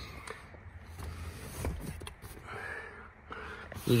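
Faint rustling and handling noise with a few soft clicks as a person moves about in a car's back seat.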